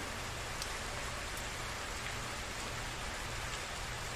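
Steady rain falling on a wet concrete platform and its puddles, with a few separate drops ticking through it.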